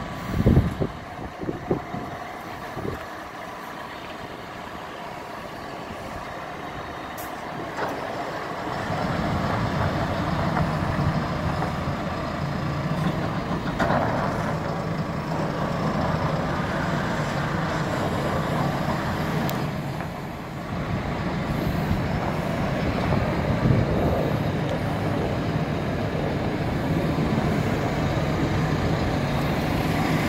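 Tractor diesel engine pulling a loaded dump trailer. It runs quieter at first, with a few knocks in the first seconds, then gets louder and steady about eight seconds in, dipping briefly near twenty seconds.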